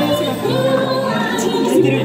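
A song playing, with a group singing over held bass notes.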